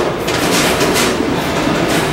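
Steady loud clattering mechanical din of batting-cage machinery, with a few sharp knocks in it.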